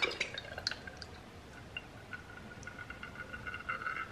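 Chili oil being poured through a metal funnel into a glass bottle: a few small drips and clinks at first, then a faint, steady trickle with a thin ringing tone.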